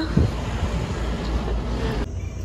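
Street noise: a steady rush of road traffic, with wind buffeting the microphone.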